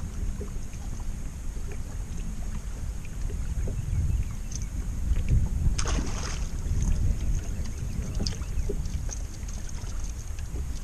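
Wind buffeting the microphone as a low, steady rumble over open water, with a sharp splash of a fish breaking the surface beside the boat about six seconds in.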